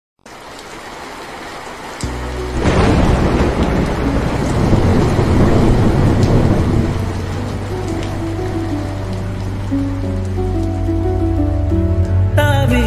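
Rain-and-thunder ambience opening a lofi track: steady rain, with a thunder rumble swelling about two and a half seconds in and fading over several seconds. Underneath, a held deep bass tone enters about two seconds in, and slow stepping melody notes join from about seven seconds.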